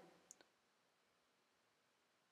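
Near silence, with two faint clicks in quick succession less than half a second in: a computer mouse being clicked.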